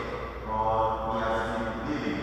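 A priest's voice chanting a liturgical prayer in a sustained sung line held close to one pitch.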